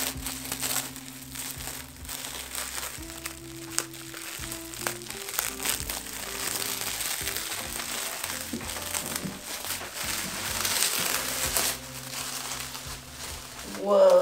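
Plastic cling wrap crinkling as it is peeled off a wooden tabletop and bunched up by gloved hands, over background music.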